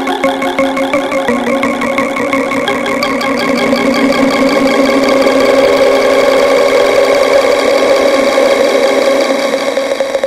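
Tech house music in a breakdown: sustained synth tones over a fast stuttering pulse, with no kick drum or bass, swelling louder toward the middle.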